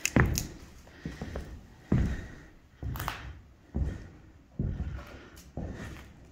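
Slow footsteps on a bare floor in an empty, unfinished room: about six dull thuds roughly a second apart, with a little room echo.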